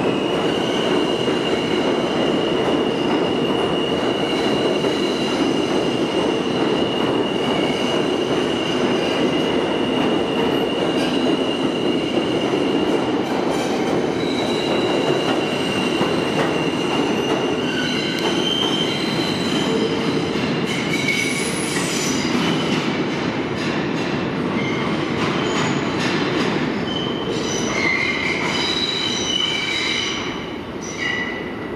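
R160A-2 subway train pulling out of the station and running off into the tunnel, its wheels and motors a steady rumble. From about halfway, high wheel squeals come and go as it takes the curve beyond the platform.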